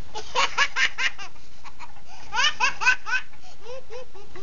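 A young child laughing in two bursts of rapid, high-pitched giggles, each a run of four or five short pulses lasting about a second, the second burst about two seconds after the first.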